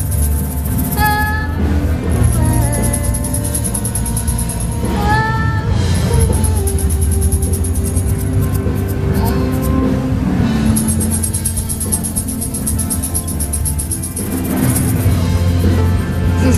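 Small acoustic band playing a song live: electric bass, strummed acoustic guitars and cajón, with a woman singing a few short phrases. A hand tambourine is shaken in long rhythmic stretches over the groove.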